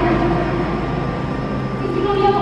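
Echoing ambience of a large domed stadium: a steady murmur with no words, a little quieter than the speech around it.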